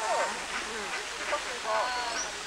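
A flock of ducks and geese calling: short, overlapping calls at several pitches, some falling quickly in pitch.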